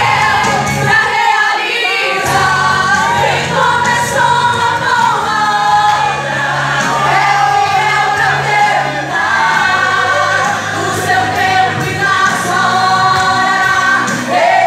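Two women singing a Portuguese gospel song as a duet through microphones, backed by a live band with electric guitars.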